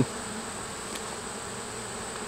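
Honey bees buzzing steadily around a hive opened up for inspection, the colony's continuous hum.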